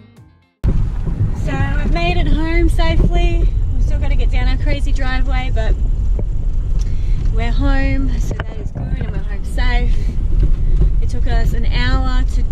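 Steady low rumble of road and engine noise inside a moving car's cabin, with voices talking over it. A strummed guitar music track cuts off about half a second in, just before the rumble starts.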